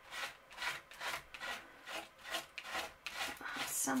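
A plastic palette knife scraping texture paste across a stencil laid on paper, in repeated quick strokes, about two to three a second.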